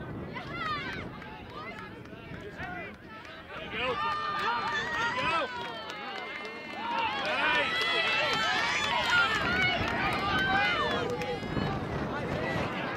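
Many voices shouting and calling out across a lacrosse field during live play. The shouting grows louder about four seconds in and again from about seven seconds.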